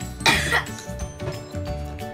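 A single short, loud cough about a quarter second in, over background music with a steady beat.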